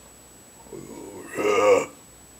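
A man's short wordless guttural vocal sound: a faint murmur just under a second in, then a louder croaking grunt near the end.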